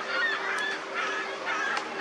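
Birds calling outdoors: about four short, pitched calls spread over two seconds.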